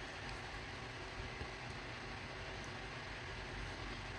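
Faint, steady low background hum of room noise with no distinct sound events; any rustle of the yarn and hook is too soft to stand out.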